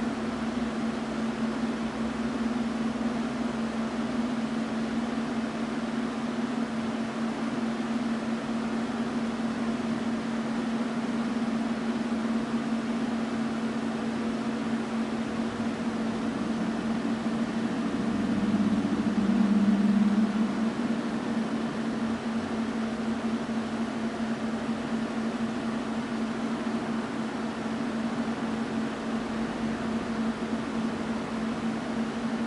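A steady mechanical hum with a low tone over an even hiss, swelling louder for a couple of seconds about two thirds of the way through.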